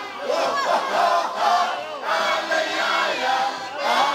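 A group of male folk singers shouting out together in calls that swoop up and down in pitch, over the band's accordion and double-bass accompaniment with a low beat about once a second.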